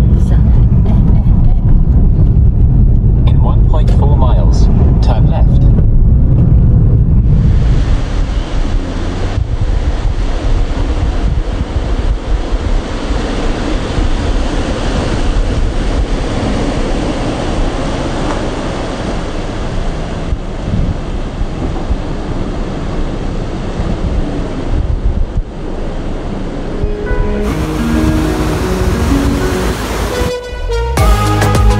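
Steady low road and engine rumble inside a moving car's cabin. After about seven seconds it gives way to waves washing onto a sandy beach, with wind buffeting the microphone. Background music starts near the end.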